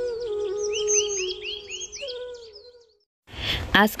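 Background music: a soft flute-like melody mixed with bird chirps, which cuts off to dead silence about three seconds in. A woman's voice starts just before the end.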